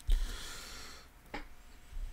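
A breath out through the nose close to the microphone, fading over about a second, then a single small click.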